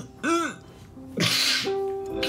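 A man sobbing: a short cry that rises and falls in pitch, then a sharp gasping breath, over sustained background music notes.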